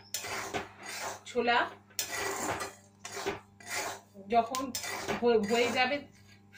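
Metal spatula scraping and stirring hot salt and black chickpeas around a metal wok during dry roasting, in about five irregular strokes with short gaps between them.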